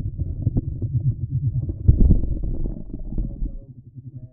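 Vibration signals of male Phidippus clarus jumping spiders, made by shaking the abdomen during an aggressive contest: a dense, rapid run of low buzzing pulses, loudest about two seconds in and fading near the end.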